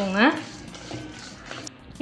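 Dry dals, rice and peanuts being stirred with a spatula in a steel kadai while dry-roasting: a faint, even scraping rustle. It follows a short word of speech at the start.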